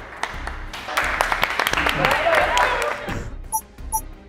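A small group of people clapping and cheering for about two seconds, then two short electronic pings near the end.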